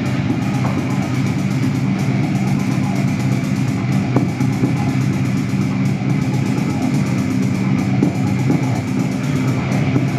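Live experimental electronic music: a dense, steady low drone of layered sustained tones, with a few sharp clicks scattered through it.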